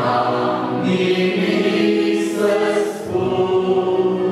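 Congregation of men's and women's voices singing a hymn together in long, held notes, with a brief dip for breath about three seconds in.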